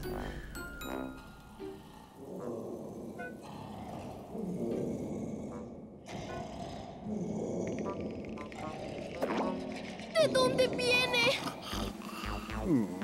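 Cartoon soundtrack: background music under a sleeping character's snoring and grunting sounds, with a louder wavering, warbling sound near the end.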